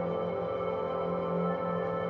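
Ambient focus music of held, steady drone tones carrying 40 Hz gamma binaural beats.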